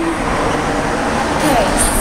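Loud, steady rushing noise, with a girl briefly singing "doo-doo" at the start and a few short voice sounds near the end.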